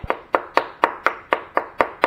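Steel thread chaser knocked repeatedly against a rag-covered wooden stand, about four sharp knocks a second, shaking out the grime ("funk") that it cleaned from the engine block's head-bolt threads.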